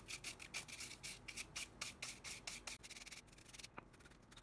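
Paintbrush bristles swept in quick back-and-forth strokes across a circuit board, dusting it off: a scratchy brushing of about five strokes a second that thins out about three seconds in.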